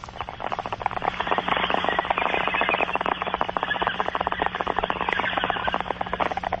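Bong hit played as a radio sound effect: water bubbling rapidly through a bong as smoke is drawn in, a fast, even gurgling crackle with a steady low hum beneath.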